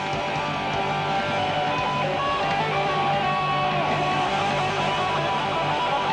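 Live heavy-metal electric guitar solo with bent notes, over a bass guitar holding a low note.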